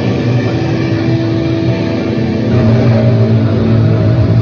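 Doom metal band playing live: heavily distorted electric guitars and bass hold long, loud sustained chords, with the chord changing about two and a half seconds in.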